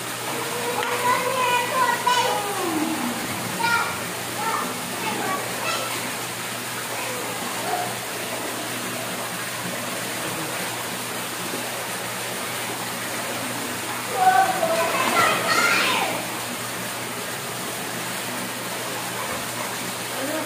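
Children playing in a swimming pool: high-pitched calls and shrieks, loudest about fourteen to sixteen seconds in, over the steady rush of water falling from a wall fountain into the pool.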